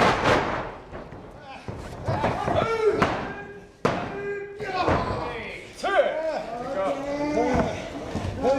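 Bodies slamming onto a pro-wrestling ring canvas: a thud at the start, more near the middle and another about three-quarters of the way through, with voices shouting between the impacts.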